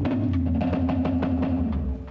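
A rock band playing a song: drum hits over sustained bass notes and electric guitar.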